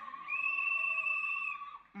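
A single high-pitched held cry, a little under a second and a half long and wavering slightly in pitch.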